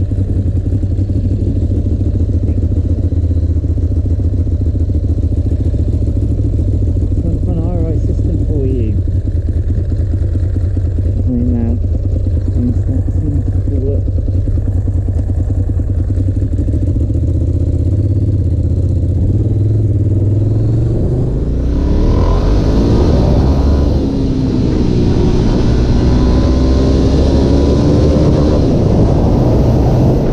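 Ducati Monster S2R 1000's air-cooled L-twin engine running steadily at low speed, then, about two-thirds of the way in, revving up repeatedly as the bike accelerates through the gears, with rushing wind noise rising with speed.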